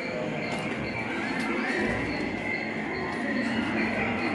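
Crowd of visitors chattering in a large indoor hall, the voices blurred together and echoing, with a faint high chirp repeating about three times a second.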